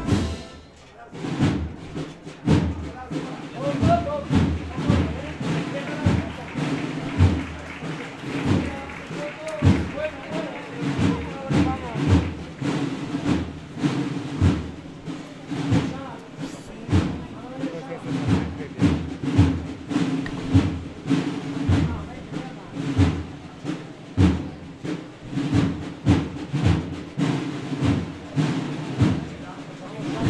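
A brass band's march stops, and its drums go on alone, beating a steady walking step of about one beat a second. Crowd voices can be heard over the drumbeat.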